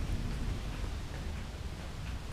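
Faint, steady hiss of heavy rain heard from inside a garage, with a low rumble underneath.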